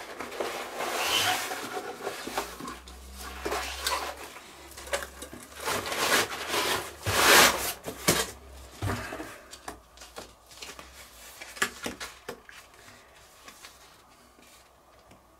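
Handling and unpacking of stainless-steel grill skewers: irregular rustling and rubbing of packaging with light knocks, the loudest burst about seven seconds in, fading out toward the end.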